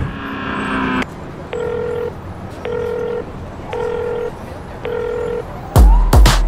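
A held musical chord cuts off about a second in. Then come four evenly spaced electronic telephone-style beeps, each about half a second long and repeating a little over once a second, like a busy or ringback tone. The loud music beat comes back in just before the end.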